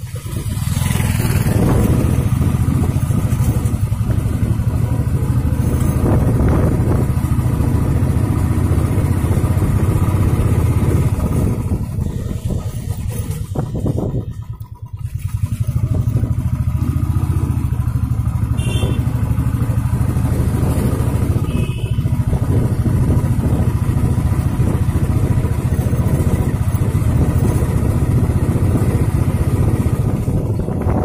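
Vehicle engine and tyre rumble while driving on a rough dirt road: a steady, loud low drone that dips briefly about halfway through.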